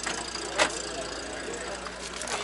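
A car engine idling steadily, with one sharp click about half a second in.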